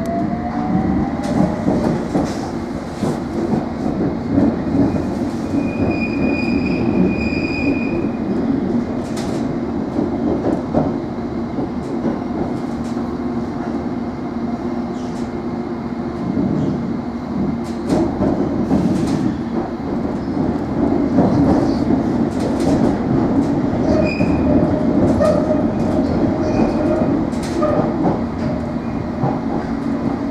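London Underground S7 Stock train under way, heard from inside the carriage: the traction motor whine rises in pitch as it picks up speed, then a steady running rumble with rail-joint clicks. Brief high wheel squeals come a few seconds in and again later.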